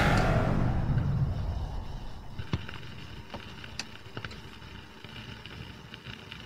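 A whoosh fades out over the first second or so, leaving a low rumble; then scattered clicks and pops with faint hiss from a 45 rpm vinyl record's surface as the stylus runs in the lead-in groove.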